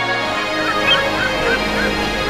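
Background music with a run of short bird calls over it, about three a second, starting about half a second in.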